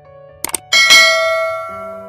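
Two quick clicks, then a bright bell chime that rings out and fades over about a second: a subscribe-button and notification-bell animation sound effect, over soft background music.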